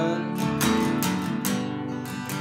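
Acoustic guitar strummed in a steady rhythm, its chords ringing between sung lines.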